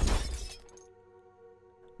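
Glass shattering sound effect: a sudden crash at the start that fades out within about a second. Under it is a steady low drone of background music.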